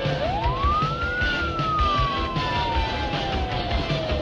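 A single siren wail, its pitch rising quickly over the first second and then falling slowly for the rest, over music with a steady low beat.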